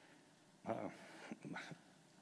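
A man's brief, hesitant "uh" about half a second in, falling in pitch, then a few faint murmurs over quiet room tone.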